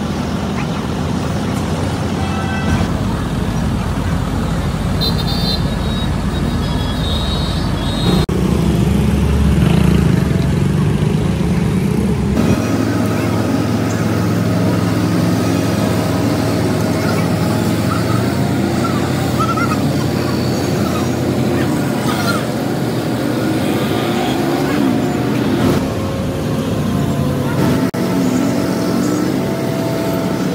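A large vehicle engine runs steadily under street traffic noise, with voices now and then. The sound changes abruptly a couple of times in the first half.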